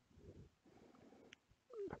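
Near silence, with two faint low sounds in the first second and a half. A man's voice starts a word at the very end.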